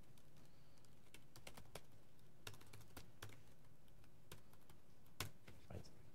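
Faint, irregular keystrokes on a laptop keyboard as commands are typed, with a slightly louder key press about five seconds in.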